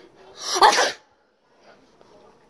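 A single sneeze into a hand held over the mouth, loud and short, lasting under a second.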